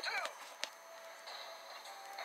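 Animated-show soundtrack played through a small device speaker and picked up off-screen. A voice trails off at the very start, a single click comes about half a second in, and faint thin steady electronic tones follow.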